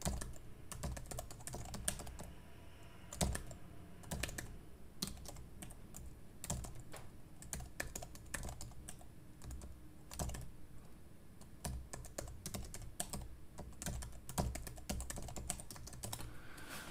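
Computer keyboard typing: irregular runs of fairly quiet keystrokes with short pauses, a few strokes louder than the rest.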